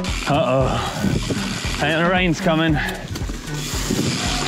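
A man's voice, its pitch shaking, over a steady hiss of wind and tyre noise from a mountain bike riding down a muddy forest trail.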